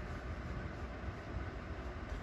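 Steady low background rumble with a faint hiss, with no distinct events standing out.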